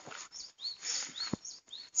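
A small bird calling over and over with short, high chirps, about two a second, with a brief rustling noise about a second in.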